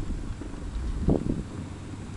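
Steady low rumble of wind on the microphone and tyres rolling on asphalt as an electric scooter rides along a street, with a brief low thump about a second in.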